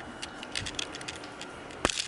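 A run of light, irregular clicks and taps over faint room noise, then one sharp click near the end.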